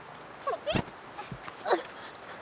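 A woman's short whimpering cries, three in all, with a dull thump a little past the middle.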